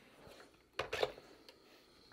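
A Panasonic 360 cordless iron being set down onto its base about a second in, giving a couple of short knocks, with faint rustling of fabric around it.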